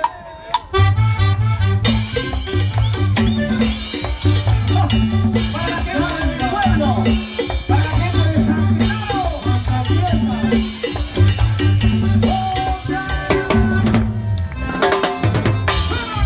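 A live band starts up about a second in and plays Latin dance music: a drum kit with cymbal crashes over a bass line that repeats about once a second.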